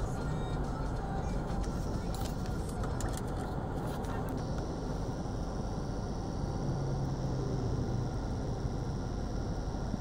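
Steady car interior noise, engine and tyres on the road, as the car moves slowly in heavy highway traffic.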